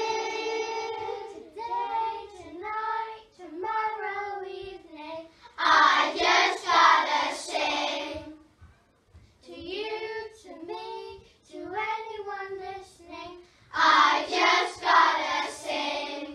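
A class of young children singing together in short phrases. The singing grows louder and fuller about six seconds in and again near the end.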